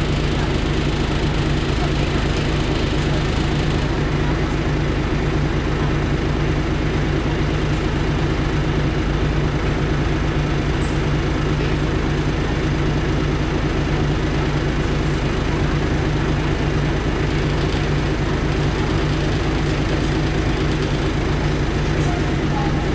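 Cummins LT10 six-cylinder diesel engine of a 1993 Leyland Olympian double-decker bus, heard from inside the passenger saloon, running steadily at one unchanging engine speed.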